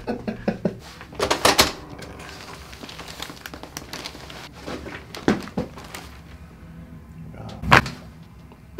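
Chiropractic neck adjustment: a cluster of short clicks about a second in and two more in the middle, then one loud, sharp crack near the end as the neck joint releases under the thrust.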